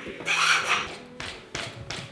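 Floor pump being worked by hand to inflate a bike tyre: one long rasping rush of air on a full stroke, then a shorter, fainter stroke near the end.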